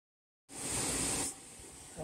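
Handling noise as the phone is brought up to film: a brief hissing rustle of fabric against the microphone, under a second long, then faint steady background hiss.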